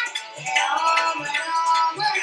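A young girl singing a song over musical accompaniment with a steady low drum beat, about two and a half beats a second.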